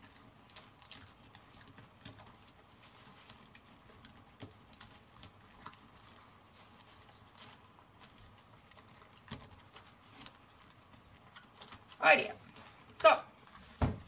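Strips of NZ flax (Phormium tenax) rustling and clicking softly as they are woven over one, under one. Near the end come two loud short sounds about a second apart, then a sharp thump.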